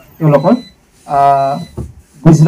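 Only speech: a man talking through a handheld microphone. He says a short word, then draws out one steady vowel.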